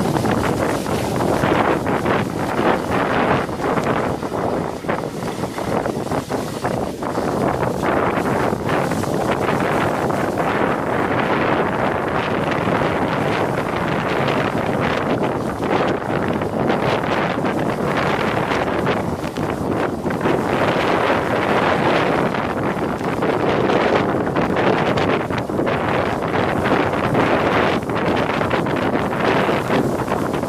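Wind buffeting the microphone over the continuous hiss and scrape of a sledge sliding down a packed-snow run.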